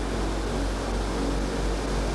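Steady hiss-like background noise with a low hum underneath, in a pause between spoken phrases.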